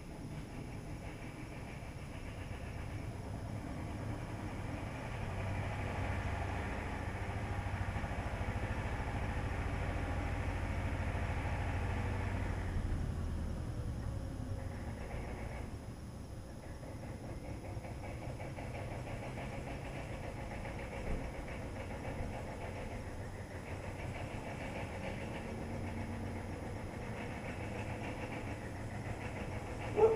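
An engine running steadily, getting louder over the first dozen seconds, then easing off and holding even.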